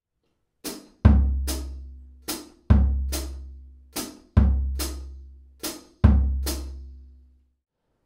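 Drum kit bass drum struck once a bar on beat two in a slow bossa nova groove, four times about a second and a half apart, each deep boom ringing out and fading. Crisp hi-hat pedal chicks fall on the offbeats just before and after each kick.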